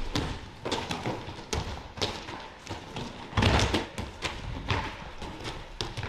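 Irregular thuds and thumps of wrestlers' hands, feet and bodies landing on a foam wrestling mat during warm-up cartwheels and rolls, in a large gym hall.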